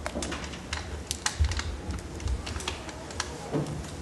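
Scattered sharp clicks and light taps, irregular, about four or five a second, over a low rumbling thud of movement.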